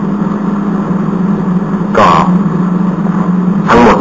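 A steady low hum with a hiss of background noise, unchanged through the pause in speech. A single short spoken word cuts in about two seconds in, and speech resumes near the end.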